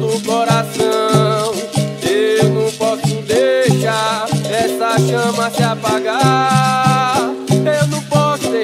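Background music: an upbeat song with a steady beat and a moving melody.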